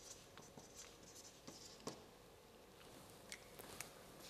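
Faint scratches and clicks of a felt-tip marker writing on a flip-chart board, close to silence.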